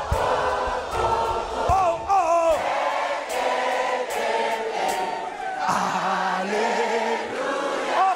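Live gospel worship song: a male worship leader and many voices sing a wordless "oh oh oh oh, yeh eh eh eh" refrain over a band. The drums and bass drop out about two and a half seconds in, leaving mostly the voices.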